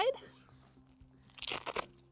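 Hook-and-loop (Velcro) strap crackling once, briefly, about a second and a half in, as it is wrapped around a tent frame leg and pressed closed onto itself.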